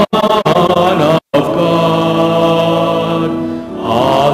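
Church music for the sung hallelujah before the Gospel: voices with keyboard accompaniment, settling into a long held chord that fades near the end. The audio cuts out completely for a moment about a second in.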